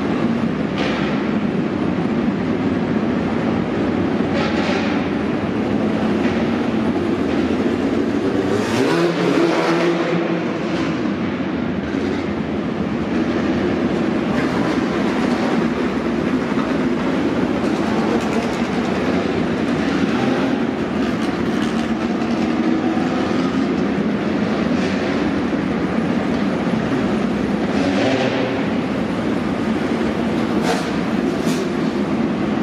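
Midget race car engines running in an indoor arena, a steady loud rumble, with one engine's pitch swinging up and down about nine seconds in.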